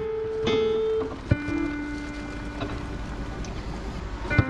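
Pipe organ music with slow, long-held notes, broken by a couple of sharp knocks.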